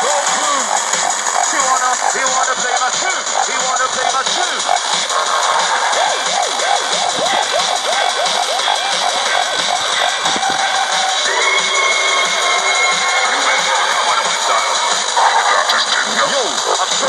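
Music with vocals playing through the small speaker of a Tecsun PL-600 portable radio on FM, buried in heavy steady static hiss: a weak, barely receivable signal with interference from a neighbouring station.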